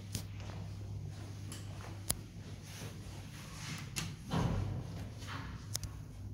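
Old ZREMB passenger elevator in operation: a steady low hum with sharp clicks about every two seconds, and a louder rumbling clatter about four and a half seconds in.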